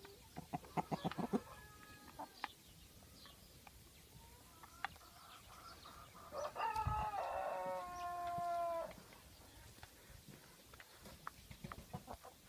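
Rooster of the Kosovo tricolour (Tringjyrshe) chicken breed crowing once, a long call of about two and a half seconds starting some six seconds in. Near the start, a quick run of clucks from the flock.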